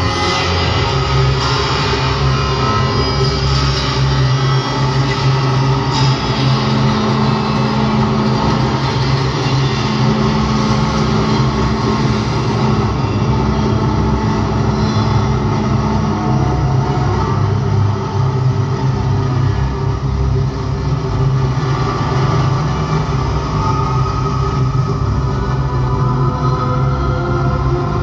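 Live synthesizer music: a loud, steady, rumbling low drone of sustained bass tones under a dense wash of higher sound.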